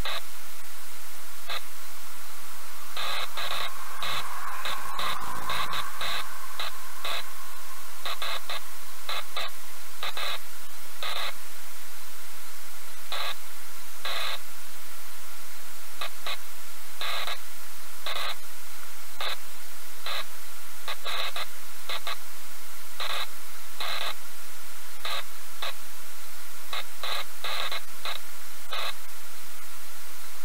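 Loud, steady static hiss with irregular short crackles every half second to a second, like a noisy recording channel or radio interference.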